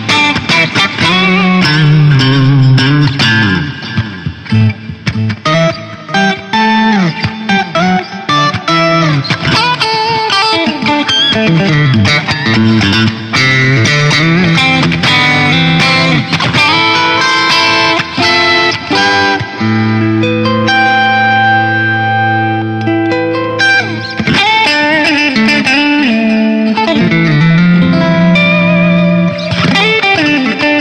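Electric guitar played through a BOSS GT-1000 effects processor on a clean split-coil patch with light compression and drive: fast runs of single notes and chords, with a chord held for about four seconds past the middle. The tone is bright and spanky.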